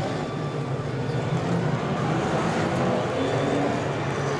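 Stock car racing engines running laps on a short oval track: a steady drone of several engines, with the pitch shifting a little late on as cars pass.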